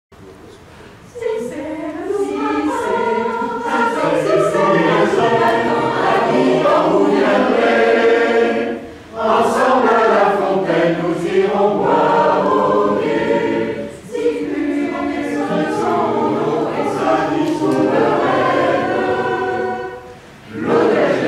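Mixed choir of men's and women's voices singing in parts, coming in about a second in, with two brief breaks between phrases, about halfway and about two-thirds through.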